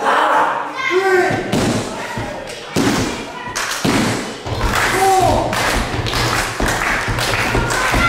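Repeated heavy thuds, with short shouted calls from people in the room and more thuds pulsing faster from about halfway through, as both wrestlers lie on the ring mat.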